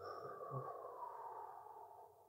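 A man's long, slow out-breath: a faint breathy hiss that gradually fades away near the end. It is the exhale phase of a diaphragmatic breathing exercise, with the belly drawn in.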